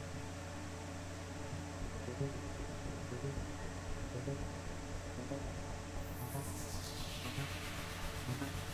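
Soft background music over a steady low hum. About six seconds in, a hiss of noise starts high and falls steadily in pitch, like a sweeping whoosh.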